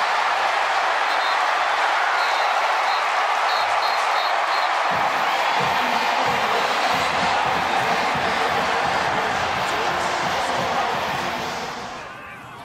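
Football stadium crowd cheering after a touchdown, dying down near the end.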